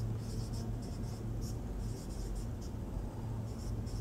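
Marker pen writing on a whiteboard: a quick series of short scratchy strokes as symbols are written out, over a steady low hum.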